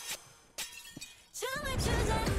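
Background music cuts out, then a glass-shatter sound effect hits about half a second in and rings down, with a smaller hit just after. The music comes back with a gliding tone near the end.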